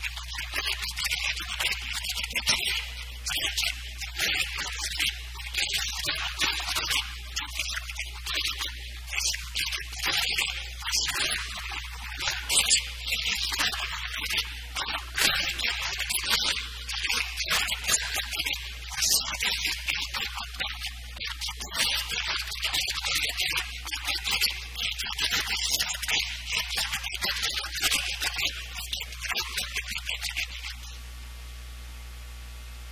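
A lecturer's voice, badly distorted: thin and hissy, with most of its sound high up and its loudness rising and falling like continuous talk. A steady low hum runs under it.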